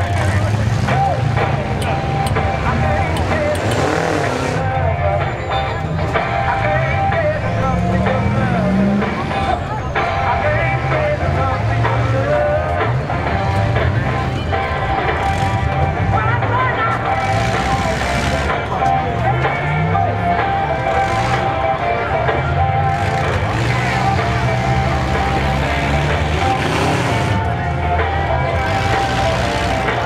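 Demolition derby cars' engines revving up and down in a pack, with occasional bangs from cars hitting each other, over steady grandstand crowd chatter.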